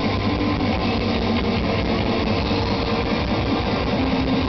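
Black metal band playing live: distorted electric guitars and bass over drums, an instrumental stretch with no vocals.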